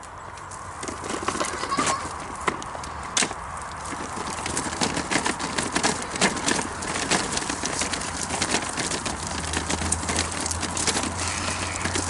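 Pushchair wheels and footsteps crunching along a rough gravel path: a dense, irregular crackle of small clicks that keeps on as the walk goes.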